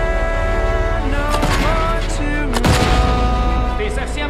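War-film trailer soundtrack: orchestral music with long held notes, broken by a cluster of sharp gunfire-like bangs about a second in and a heavy boom with a low rumble a little past halfway.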